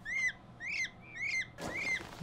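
Peachicks peeping: a steady run of short rising-and-falling chirps, about two a second.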